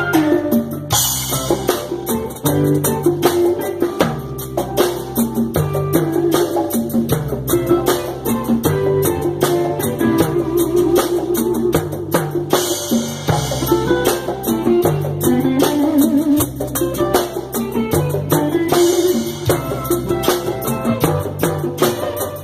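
Live instrumental reggae from a small steel-drum band: electric guitar and hand percussion (congas and tambourine) keep a steady groove, and a cymbal crashes about a second in, again near the middle and near the end.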